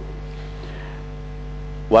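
Steady electrical mains hum in the sound system, a low, constant drone with a few fixed tones above it, heard through a short pause in speech.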